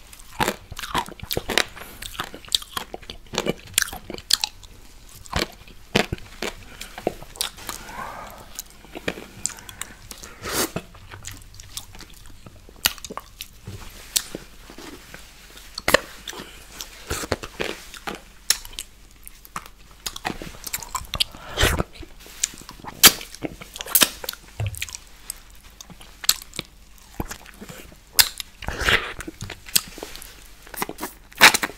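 Close-miked mouth sounds: wet licking, lip smacks and many sharp, irregular clicks of the tongue and lips as a person licks whipped cream off the top of a milkshake cup and licks a straw.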